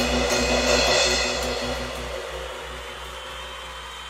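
Ludwig Accent Fuse five-piece acoustic drum kit, a few last strikes under a wash of ringing cymbals, then the cymbals fade away as the song ends.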